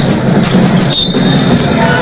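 Basketball arena sound during live play: music and crowd noise from the stands, with a brief high sneaker squeak on the hardwood court about a second in.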